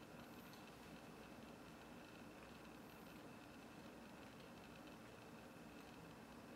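Near silence: faint, steady room tone with a low hiss.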